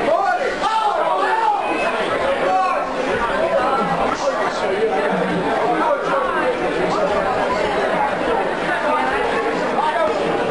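Crowd chatter in a large hall: many spectators' voices talking and calling out over one another at a steady level.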